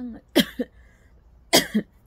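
A woman coughs twice, about a second apart.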